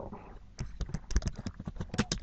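Typing on a computer keyboard: a quick, irregular run of key clicks that starts about half a second in.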